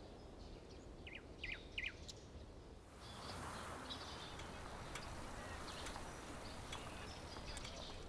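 Faint outdoor ambience with small birds chirping: three short chirps a little over a second in, then a steady wash of outdoor background noise from about three seconds in, with more scattered chirps over it.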